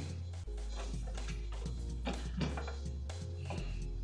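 Background music with low bass notes changing every second or so.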